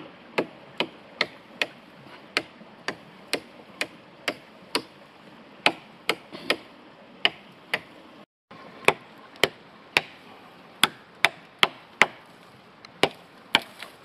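Work Tuff Gear Campo camp knife chopping into a hard birch branch: a steady run of sharp blade strikes into the wood, about two to three a second.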